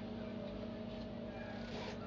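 Steady low electrical hum of a few held tones, typical of the bar's beer and wine coolers running.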